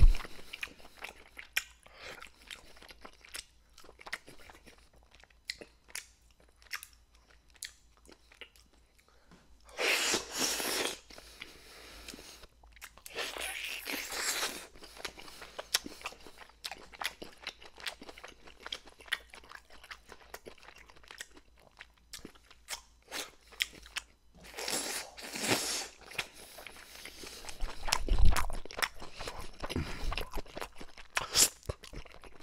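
Close-miked chewing of baked dynamite mussels eaten from the shell: many small wet mouth clicks and smacks, broken by a few longer, louder noisy bursts.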